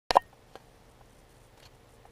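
Action camera's short double beep as recording starts, followed by a faint click and quiet room tone.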